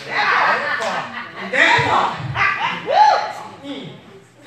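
Speech only: a voice speaking loudly, its words not clear, with a few strongly rising-and-falling syllables.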